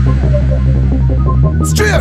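Ragga jungle drum and bass remix in a breakdown: a deep, steady bass drone under short, echoing vocal fragments, with the drums largely out. About one and a half seconds in, bright high sounds and drum hits come back in.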